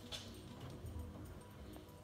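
Faint, steady hum of a Greenworks 19-inch cordless electric lawn mower running, with a brief rustle right at the start.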